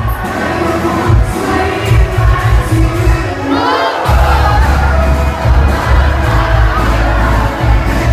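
A live band plays loud music with a heavy bass beat while a crowd cheers and shouts. The bass drops out briefly just before four seconds in, then comes back.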